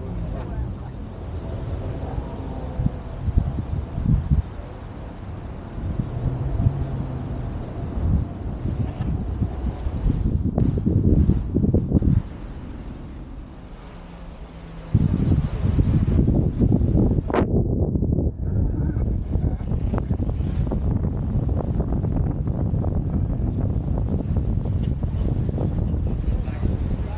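A car engine running, with wind buffeting the microphone and people talking. The sound drops away for a few seconds just past the middle, then comes back louder.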